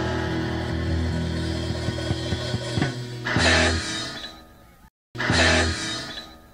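Rock band playing electric guitar music: a sustained chord, then two hard accented chord hits about two seconds apart, each left to ring and fade. The sound drops out completely for a moment between the two hits.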